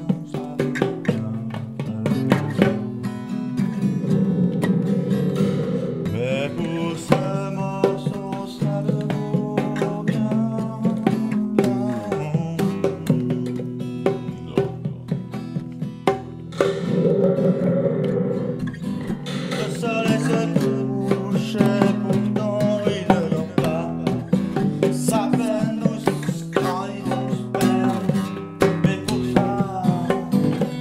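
Guitar-led rock music playing without a break.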